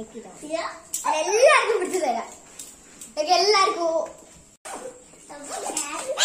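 A young girl talking in several short phrases.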